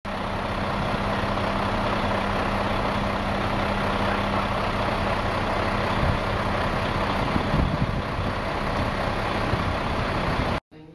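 Street traffic noise with a nearby vehicle engine idling, a steady low hum that stops about three quarters of the way through.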